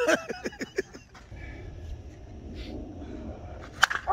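Men laughing briefly, then a quiet stretch of outdoor background, then near the end one sharp crack of a Suncoast slowpitch softball bat striking a pitched softball.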